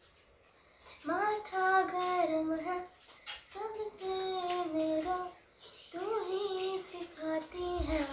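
A young girl singing solo, one voice with no accompaniment, in three slow phrases of long held notes with short pauses between them.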